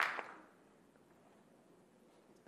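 The last claps of scattered applause in a council chamber, dying away within the first half second, then near silence with only faint room tone.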